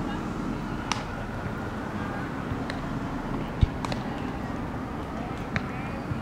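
Ballfield ambience: faint distant voices of players and spectators over a steady background hum, broken by a few light clicks and one low thump about halfway through.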